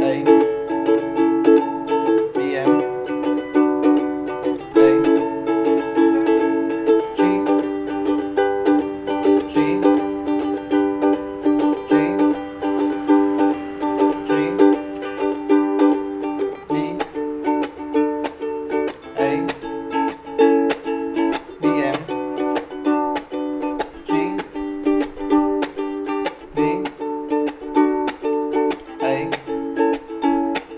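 Ukulele strummed in a steady rhythm, changing chords every couple of seconds through a Bm–A verse. About halfway it holds a G chord for the pre-chorus, then moves into a D–A–Bm–G chorus near the end.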